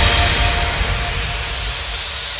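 Background music fading out, its held notes dying away in the first second and leaving a steady hissing wash of noise.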